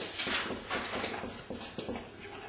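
Black felt-tip marker writing on paper, a run of short strokes one after another.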